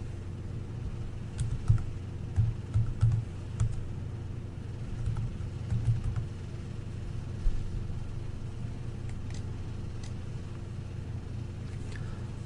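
Typing on a computer keyboard: scattered keystrokes in short irregular bursts, over a steady low electrical hum.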